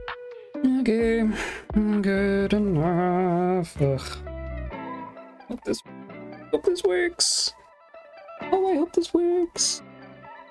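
Soft guitar background music, with a person's voice singing wordlessly over it in drawn-out, wavering notes, in a long phrase and then two short ones.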